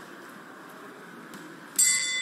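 Low hall ambience, then near the end a boxing ring bell strikes once and keeps ringing, signalling the start of round one.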